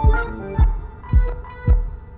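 Instrumental music: a deep kick drum beating about twice a second under held, humming tones, with a few sparse higher notes.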